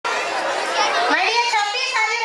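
Audience chattering, a mix of overlapping voices with high-pitched children's voices standing out; no words come through clearly.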